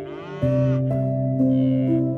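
A cow mooing once, in the first second, over background music with sustained notes.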